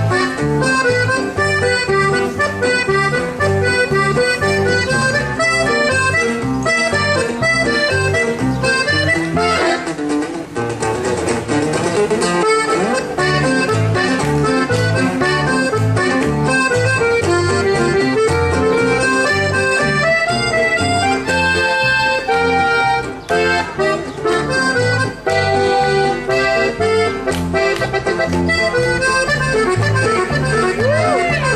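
Instrumental conjunto music led by a button accordion playing a quick, busy melody over a strummed string accompaniment and a steady, repeating bass pattern.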